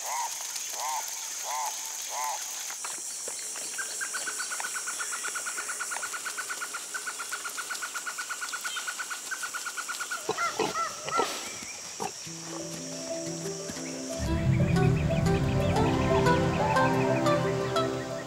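Rainforest wildlife sound: a steady high insect whine with short repeated chirping calls, then a fast even trill, then a few calls. Music with a low bass line fades in about two-thirds of the way through and grows louder near the end.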